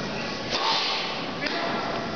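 Tennis ball struck hard with a racket on a serve about half a second in, then hit back about a second later, each strike a sharp crack echoing in a large indoor hall.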